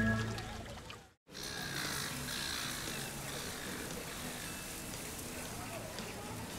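Soft background music fading out over the first second, a moment of silence at a scene cut, then a steady hiss of background ambience with faint indistinct voices.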